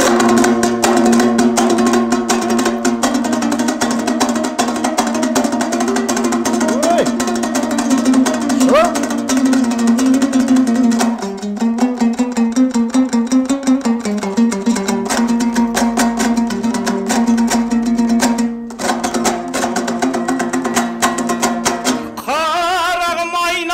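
A Kazakh dombra, the two-stringed long-necked lute, strummed fast and rhythmically over a steady low note, as an instrumental passage. It breaks off for a moment near the end, then goes on.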